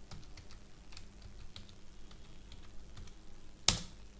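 Computer keyboard being typed on: a run of light, scattered keystrokes as a password is entered, then one much louder key press near the end, the Enter key.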